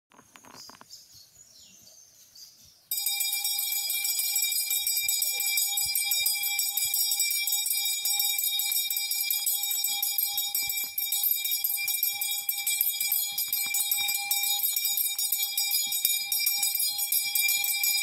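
A metal bell rung rapidly and without a break, starting abruptly about three seconds in after a quiet opening. It holds one steady ringing pitch with bright higher overtones.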